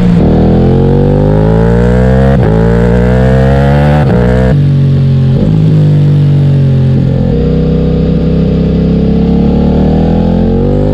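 Ducati Multistrada V4S's V4 engine running through a full Akrapovic exhaust system, accelerating up through the gears with quick upshifts, the revs climbing and dropping back about every two seconds. About halfway through the throttle is closed and the revs ease down as the bike rolls on.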